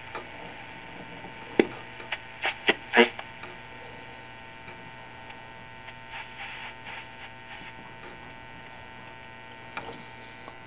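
Vintage wooden tube table radio tuned across the shortwave band, giving a steady hum and static, with a few sharp crackles between about one and a half and three seconds in and a stretch of hissy static around six to seven seconds. A lot of static, which the owner puts down to fluorescent lights nearby.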